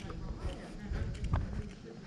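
Footsteps of a person walking on a paved street, a run of irregular low thumps, with faint voices in the background.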